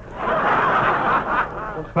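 Studio audience laughing at a punchline on an old radio broadcast recording. The crowd laugh swells up a fraction of a second in and eases off near the end.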